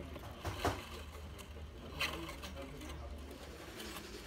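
Workshop background with a steady low hum, faint voices, and a few sharp light clicks: two close together about half a second in and one about two seconds in.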